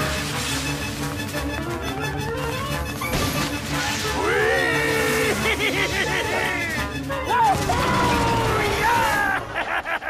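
Cartoon orchestral score playing, with a character yelling and wailing from about four seconds in, and a crash sound effect.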